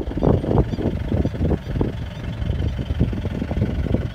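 Safari jeep driving on a dirt track, seen from inside the cab: the engine runs under a heavy, uneven rumble with irregular knocks and jolts.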